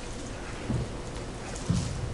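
Steady hiss of the sanctuary's room tone, with a couple of faint low knocks, about a second in and near the end.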